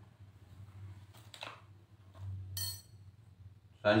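Light kitchen handling: a metal spoon and bowls clinking faintly, with a few soft knocks a little over a second in and a brief hiss past the middle.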